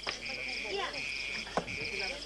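Insects chirping in a steady chorus, in repeating phrases about half a second long with short breaks, over faint voices, with a sharp click about a second and a half in.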